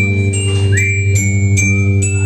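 Live indie-rock band playing an instrumental passage: a held low chord from cello and guitars, shifting once about a second in, under bright struck glockenspiel notes, about two or three a second.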